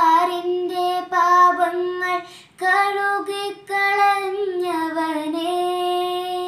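A girl singing a Malayalam Christmas carol solo and unaccompanied, in long held notes with short breaths about two and a half and three and a half seconds in.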